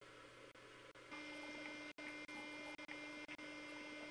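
A faint steady electrical hum with a high whine in it, starting suddenly about a second in over low hiss, with a brief dropout near two seconds.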